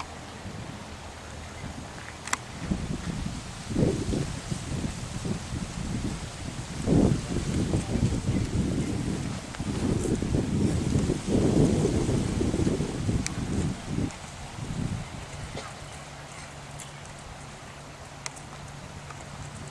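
Wind buffeting the microphone in irregular gusts, strongest between about three and fifteen seconds in, then easing to a faint low hum.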